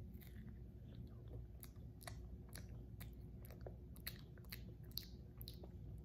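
A child biting into and chewing a mouthful of cheesy pizza-boat bread, with a run of short, crisp mouth clicks and crunches.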